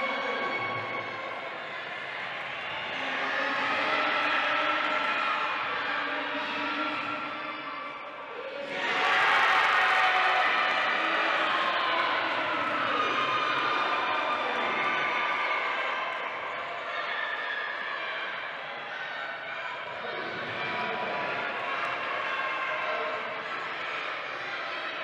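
Echoing sports-hall crowd noise and players' voices during a wheelchair basketball game, with a sudden burst of cheering about nine seconds in as a basket levels the score.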